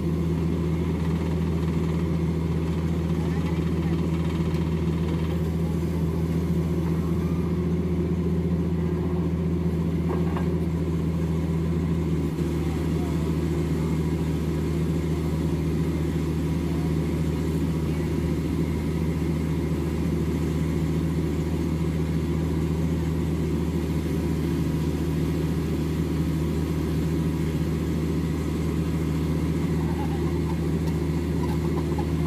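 Diesel engine of a horizontal directional drilling rig running steadily as the rig drives its drill rod into the ground, a constant low drone that does not change.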